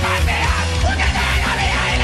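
Loud rock music with shouted vocals over heavy bass.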